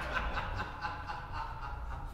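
Young men chuckling softly, in short breathy pulses that fade near the end.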